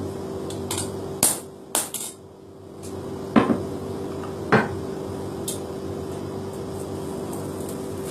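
Several irregular hammer blows on metal in the first five seconds, the two heaviest ringing briefly, over a steady machine hum.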